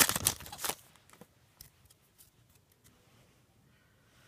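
Foil trading-card pack wrapper tearing and crinkling for about the first second, then only a few faint soft clicks.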